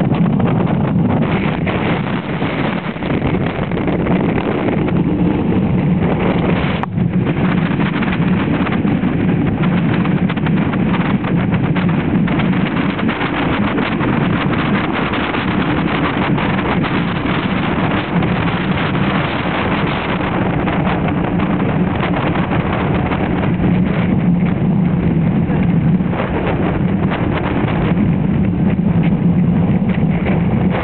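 Strong wind buffeting the camera microphone: a loud, steady low rumble with no let-up. A single short click about seven seconds in.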